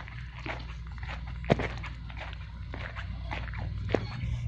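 Footsteps crunching on gravel, irregular short crunches with a sharper click about one and a half seconds in and another near the end, over a steady low hum.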